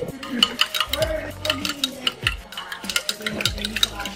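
A teaspoon stirring liquid in a glass pitcher, rapid clinks of the spoon against the glass.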